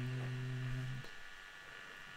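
A man's voice holding a flat, steady hummed "mmm" that stops about a second in, the sound of someone thinking over a problem; after it, only quiet room tone.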